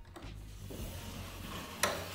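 Wooden shoji paper doors sliding by hand along their track, a low steady rumble, with one sharp click near the end.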